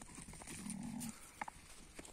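A ram giving one short, low bleat about half a second in, followed by a couple of faint clicks.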